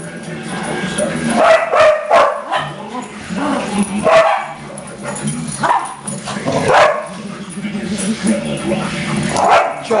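A group of small dogs barking and yipping in play, with repeated barks at irregular intervals, about one a second.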